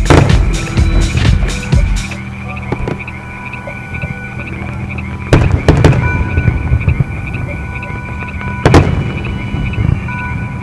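Fireworks shells bursting over an open field: a dense, crackling volley in the first two seconds, then a few sharp booms about five and a half seconds in and one more near the end. A steady high tone and a low hum run underneath.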